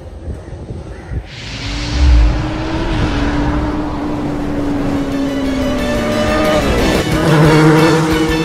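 Sound-effect motorcycle engine in an animated logo sting. It comes in with a whoosh and a low thump about a second in, holds one steady note, then drops sharply in pitch near the end as music takes over.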